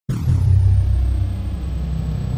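Deep, steady rumble of an intro sound effect for a logo reveal, starting abruptly, with a faint high tone that falls in pitch over the first half-second.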